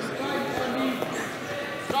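Indistinct shouting of coaches and spectators in a gymnasium, with a light knock about a second in and another near the end.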